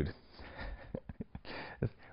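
A pause in speech: low room tone with a few faint, short breath sounds from the speaker.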